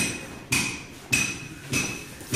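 Repeated sharp metallic knocks, four evenly spaced strikes a little over half a second apart, each with a short ringing tone: a brick knocking on an aluminium straightedge laid on the wet PCC mix.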